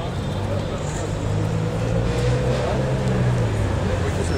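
A vehicle engine running close by, a low rumble that grows a little louder in the first second or two, over street noise.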